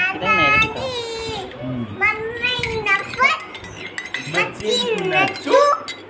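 Baby cooing and babbling in a string of high-pitched vocal sounds with long gliding rises and falls in pitch.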